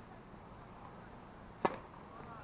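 A tennis racket striking the ball: one sharp crack about three-quarters of the way through.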